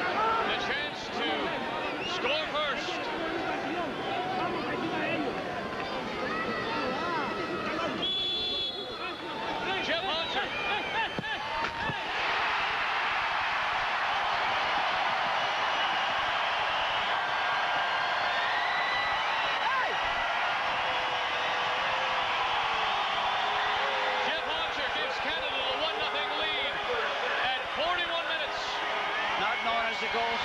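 Football stadium crowd noise, with many voices and individual shouts. About twelve seconds in it becomes a denser, steady crowd din that holds while the penalty is awaited.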